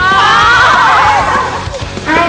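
A high, wavering cry about a second and a half long, rising at first and then falling away, over background music.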